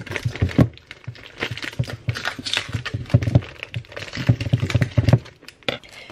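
Scissors cutting open a plastic freezer bag around a frozen block of food, the stiff plastic crinkling and rustling in irregular bursts that die down near the end.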